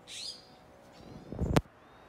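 A bird chirps outdoors: one short falling chirp at the start and a few faint chirps about a second in. About one and a half seconds in, a rising low rumble ends in a single sharp knock, the loudest sound.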